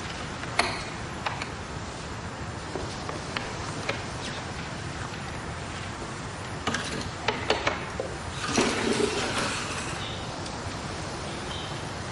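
Light knocks and clicks of a man moving about a room and handling things, with a cluster about seven seconds in and a short rustle about nine seconds in, over a steady background hiss.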